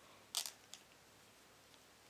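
A loom hook knitting a stitch off a plastic knitting-loom peg: one short scraping click about a third of a second in, then a fainter tick, with little else.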